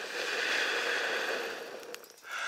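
One long breath blown at an angle into a metal can onto a bed of embers to feed them oxygen: a steady airy rush that fades near the end.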